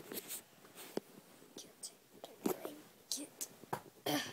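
Soft whispering, faint, broken up by scattered small clicks and rustles.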